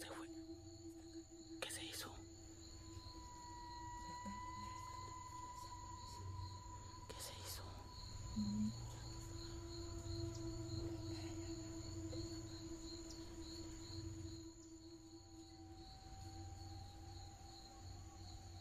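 An eerie suspense drone: several steady held tones layered together, one sliding slowly in pitch, with two brief rustles.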